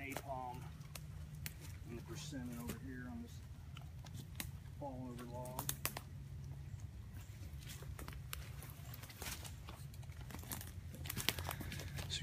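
Faint, indistinct talk in short snatches, with scattered light crackles and rustles throughout and a steady low rumble underneath.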